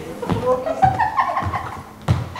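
Young actors' voices speaking lines on a stage.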